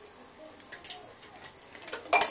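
Faint rustling of wig hair being handled by hand, with a few soft crackles in the second half.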